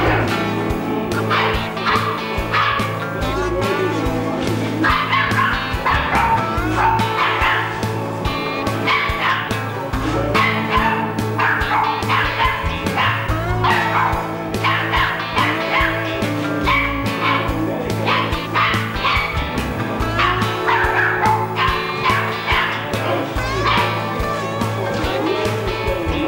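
Golden retriever puppies yipping and whimpering in short, high-pitched calls over steady background music.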